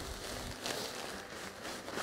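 Compost pouring out of a tipped-up plastic bag onto the grass: a soft, even rustling hiss.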